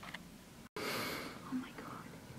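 A person whispering softly, saying 'my' of 'oh my God', over quiet room tone. The sound cuts out completely for an instant about a third of the way in.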